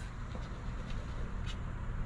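Coin scraping the coating off a scratch-off lottery ticket in a few short strokes, over a steady low background rumble.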